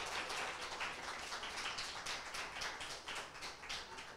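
Light audience applause: many hands clapping in a dense, irregular patter that stays steady and dies away just after the end.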